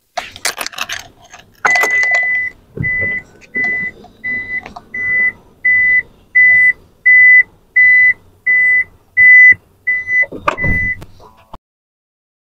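Toyota Hiace Super Grandia Elite's power sliding door sounding its warning buzzer while the door moves: one longer high beep, then a steady series of short beeps about one and a half per second. A knock near the end.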